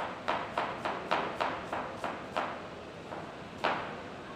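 Kitchen knife slicing an onion half on a chopping board: about eight quick, even strokes, roughly three a second, each knocking on the board, then a pause and one more cut near the end.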